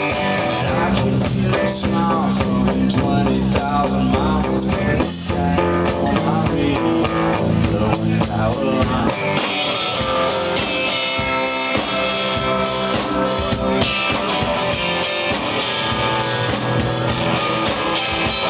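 Live electric guitar and drum kit playing an instrumental rock passage. The sound gets brighter from about halfway through.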